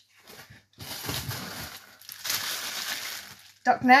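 Plastic bags of frozen raw meat rustling and crinkling as they are lifted and shifted in the delivery box, in two stretches about a second long each.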